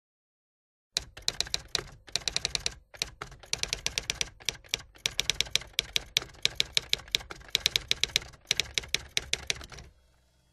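Rapid typing: sharp keystroke clicks in quick runs with brief pauses, starting about a second in.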